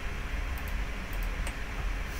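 Steady low room hum with a few faint computer mouse clicks as entities are selected in the CAD program.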